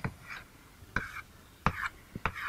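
Chalk writing on a blackboard: a few short, faint scratches of chalk on the board, then a sharp tap of the chalk near the end.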